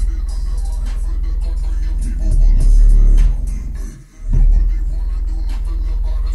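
Bass-heavy music played through an Alpine SWT-12S4 subwoofer, with loud, very deep sustained bass notes. The bass cuts out briefly about four seconds in, then comes straight back.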